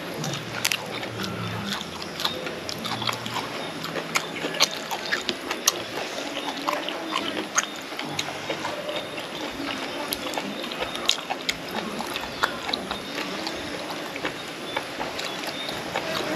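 Close-miked eating sounds: chewing with frequent small clicks and smacks of the mouth as a person eats grilled fish and raw greens with spicy Thai papaya salad (som tam).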